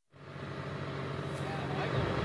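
Steady low engine-like hum of outdoor background noise, fading in quickly at the start.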